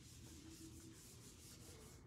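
Whiteboard eraser wiping a whiteboard in quick back-and-forth strokes, a faint swishing about five times a second.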